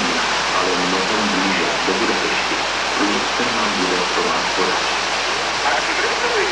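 Whitewater rushing down a slalom course, a steady loud noise, with indistinct voices over it.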